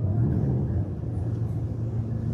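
Steady low rumbling hum, with no other distinct event.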